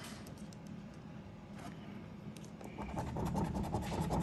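A coin scratching the coating off a paper lottery scratch-off ticket in faint, short, irregular strokes.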